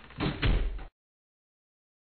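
Two heavy thumps in quick succession at the tail of the song recording, then the audio cuts off abruptly in under a second: the end of the track.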